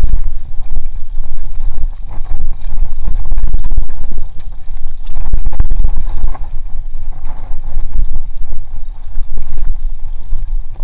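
Heavy wind rumble buffeting a rider-mounted camera's microphone as a GT Zaskar LE hardtail mountain bike runs fast down a dirt trail. Frequent sharp rattles and knocks come from the bike jolting over bumps.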